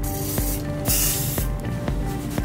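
WD-40 aerosol can spraying in two short hissing bursts, the second, about a second in, stronger than the first.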